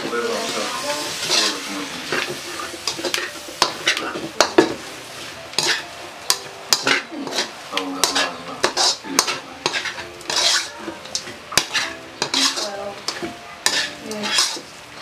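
Slotted metal spatula scraping and stirring chopped pork in a black wok, with frying sizzle underneath. The scrapes come irregularly, several a second.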